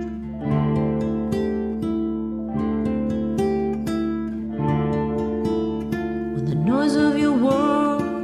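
Song with fingerpicked acoustic guitar: single plucked notes ring over held bass tones. A singing voice comes in near the end.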